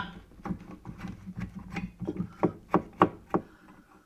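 Plastic nut on a bath tap's tail being unscrewed by hand from under the bath: a string of small irregular clicks and knocks, about three a second, as it turns and the hand knocks against the pipework.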